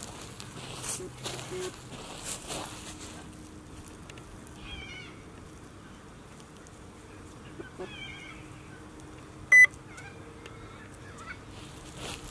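White Swiss Shepherd puppies making small high whimpers, with rustling in the first few seconds. About two-thirds of the way through comes one short, sharp, high squeak, the loudest sound.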